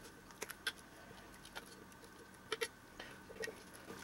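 A spatula scraping thick, freshly made soap batter out of a bowl into a plastic container: faint soft scrapes with a few light clicks and taps scattered through.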